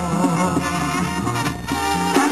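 Banda sinaloense music played by a brass band: a bass line stepping from note to note under brass and percussion.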